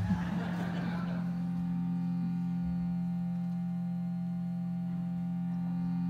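Shruti box worked by a foot pump, sounding a steady drone: a chord of held reed tones that stays level and unchanging.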